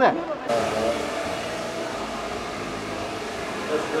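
Handheld hair dryer blowing steadily, starting suddenly about half a second in, with faint voices underneath.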